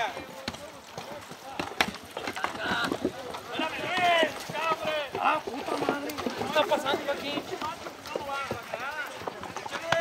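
Several riders' voices talking and calling out, not close to the microphone, over the hoofbeats of horses walking on a dirt trail.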